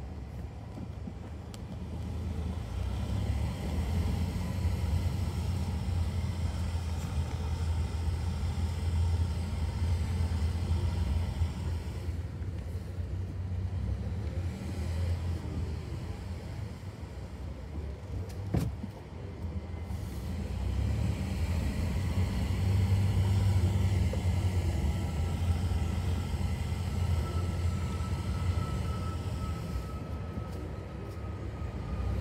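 Car engine and tyre rumble heard from inside the cabin while driving slowly through a multi-storey car park. The low rumble swells twice as the car pulls up the ramps. There is a single sharp knock about two-thirds of the way through, and a faint thin whine near the end.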